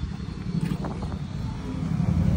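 Low, uneven outdoor rumble at a roadside, the kind of noise traffic and moving air make, with no clear single event.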